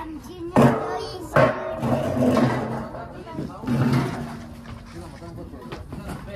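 People's raised voices talking and calling out, loudest in the first half, with two sharp knocks about half a second and a second and a half in.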